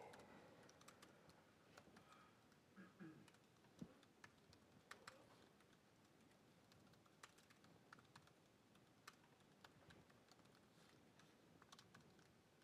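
Faint, irregular keystrokes of typing on a laptop keyboard.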